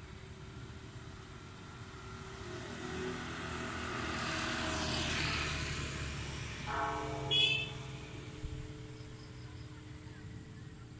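A vehicle passing along the road, growing louder to a peak about halfway through and then fading away. Just after it, a steady pitched tone sets in suddenly, with a short sharp high sound at its loudest point.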